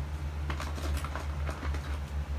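Steady low background hum with a few faint, scattered ticks and taps over it.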